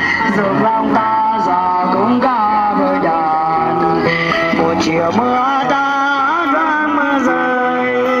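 Live street-band music led by an electric guitar, playing a wavering melody of bent, sliding notes over a steady accompaniment.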